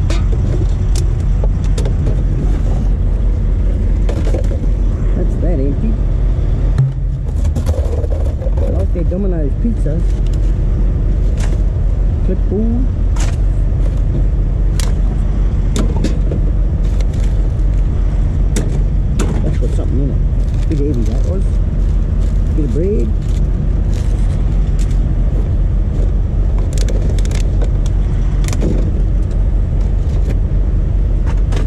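Plastic bottles and packaging being rummaged through in a rubbish bin, with scattered clicks and light clatter throughout, over a steady low machine drone. Faint muffled voices come and go.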